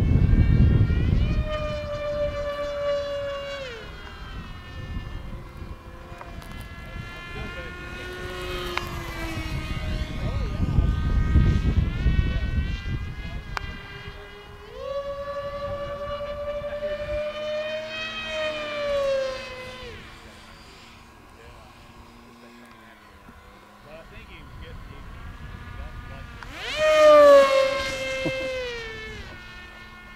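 Electric motor and 7x5 propeller of a foam RC jet (2806.5-size 1800 kV motor on 4S) whining in flight, the pitch rising and falling with throttle and with each pass. The loudest pass comes near the end, its pitch falling as it goes by. Wind rumbles on the microphone at the start and again about ten seconds in.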